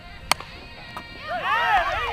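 A softball bat hitting a pitched ball: one sharp crack about a third of a second in. Several voices shout near the end.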